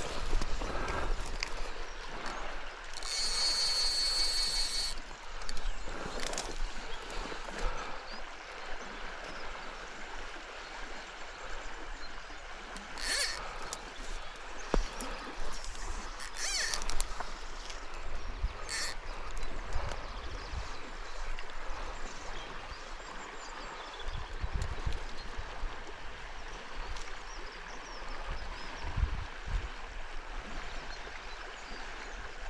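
River Suir running high and fast, a steady rush of flowing water, with gusts of wind rumbling on the microphone. A few short, high-pitched sounds cut through it: the longest lasts about two seconds, a few seconds in, and shorter ones come near the middle.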